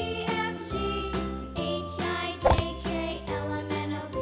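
Cheerful children's background music with a light chiming melody over a steady bass. A brief, sharp sound effect with a quick rising pitch comes about two and a half seconds in.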